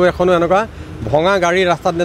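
A man speaking into news microphones, with a vehicle going by in the street behind him.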